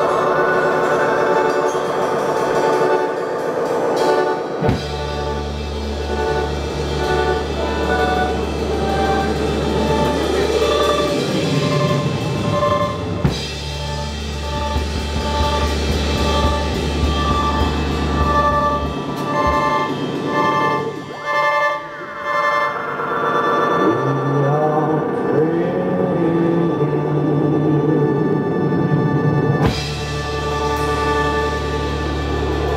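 Live experimental electronic music: sliding, siren-like pitch sweeps and short repeated bleeps over a deep drone, which comes in about five seconds in and drops out a little before twenty seconds.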